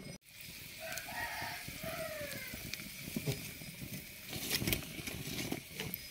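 A rooster crowing once, starting about a second in and lasting about a second and a half, over scattered sharp crackles from a wood fire under an iron ladle of frying spices.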